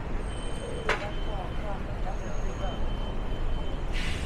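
Street traffic at a city intersection: a steady low rumble of passing vehicles, with a sharp knock about a second in and a thin high whine that comes and goes.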